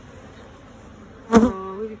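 Honeybees buzzing at an open hive; about a second and a half in there is a sudden loud knock, followed by a close, steady buzz from a bee right by the microphone.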